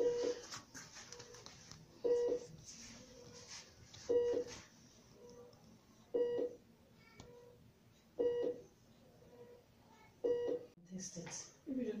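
Hospital vital-signs monitor beeping in a steady repeating pattern, a louder double beep about every two seconds with a fainter single beep between, while a finger probe reads a child's pulse.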